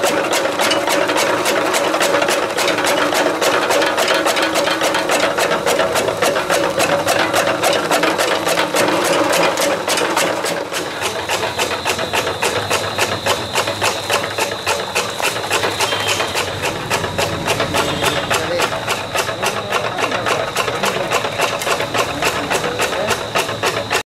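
Chaff cutter belt-driven by an electric motor, its flywheel blades chopping green leafy fodder fed through the rollers in a rapid, even run of cuts. A thin high whine joins about halfway through.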